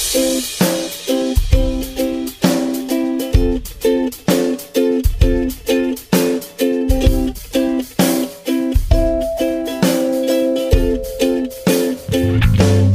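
Background music: an upbeat tune of quickly plucked strings over a drum beat, with a strong low beat every second or two.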